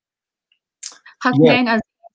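A pause with no sound, then a short sharp click about a second in, followed by a single brief spoken word.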